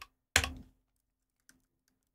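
A computer keyboard keystroke: one short, sharp key press about a third of a second in, with a fainter click near the middle, as the ⌘D shortcut is pressed to toggle the grade in DaVinci Resolve.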